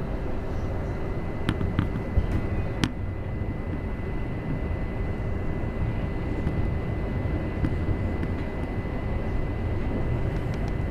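Interior running noise of a Class 707 Desiro City electric multiple unit on the move: a steady low rumble from the wheels and running gear, with a faint steady high tone over it. A few sharp clicks come in the first three seconds.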